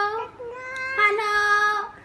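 A high-pitched, sing-song voice holding one drawn-out vowel for about a second and a half, starting about half a second in.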